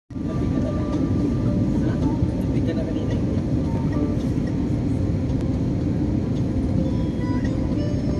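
Steady low rumble of a jet airliner's cabin in flight, with music over it.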